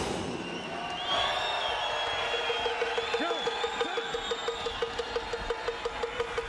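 Arena music over the PA with a fast, even pulse, over crowd noise from the stands.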